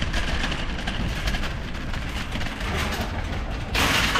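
Empty wire shopping cart rattling as it is pushed over paving, then a loud metallic clatter near the end as it is rammed into a row of nested carts.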